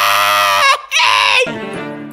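A high cartoon voice holds a long, strained "Yaaaay" shout over a music track, breaks off briefly and shouts it again. From about a second and a half in, the shout stops and the backing music goes on more quietly with steady low notes.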